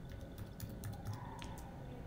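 Computer keyboard typing: a handful of light, irregularly spaced key clicks as a word is typed.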